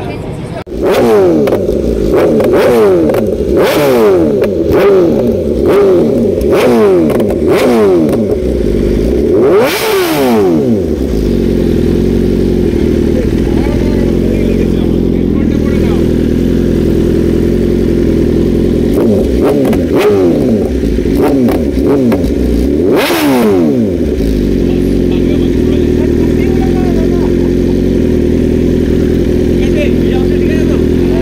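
Sportbike engine breathing through an Akrapovic slip-on exhaust starts up about a second in and is blipped repeatedly, with one long high rev near the middle of the first half. It then settles to a steady idle, gets another burst of blips with a high rev about two-thirds of the way in, and idles steadily again.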